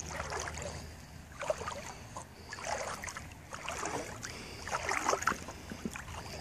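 Lake water splashing and lapping in short, irregular bursts about once a second as a miniature poodle swims toward the shallows.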